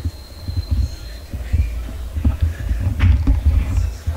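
Low, irregular thumping rumble from a handheld camera being carried at walking pace: footsteps and handling noise on the microphone. A faint steady high tone sounds for about the first second.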